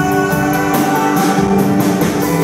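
Live rock band playing, with electric guitars, bass and drum kit; cymbal hits recur at a steady beat under sustained guitar notes.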